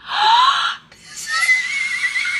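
A woman's excited, high-pitched squeals: a short rising squeal, then after a brief pause a longer shrill squeal held at a high pitch.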